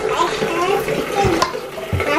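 Bathroom sink tap running, water pouring into a plastic cup, with children's voices over it.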